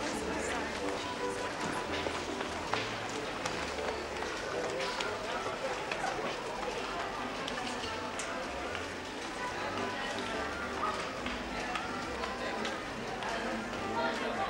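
Shopping-centre ambience: indistinct chatter of shoppers and scattered footsteps and taps, with music playing in the background.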